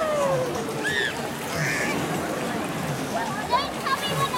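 Wave-pool water sloshing and splashing around a camera held at the surface, a steady wash of water noise, with children's voices calling out over it.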